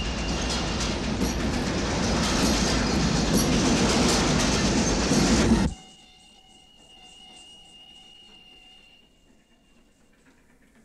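Railway train passing close by, a loud rumble with rapid clattering of its wheels on the track, building toward the middle. About six seconds in it cuts off abruptly to near quiet, leaving only a thin, faint, steady high tone.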